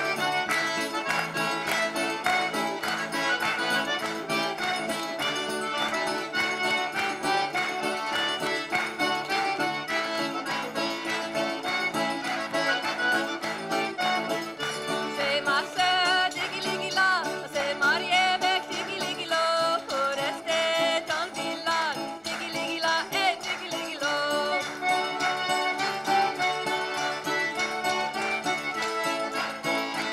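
A small Cajun band playing a traditional tune live, led by accordion with fiddle, over a steady beat. Sliding fiddle or vocal notes stand out around the middle.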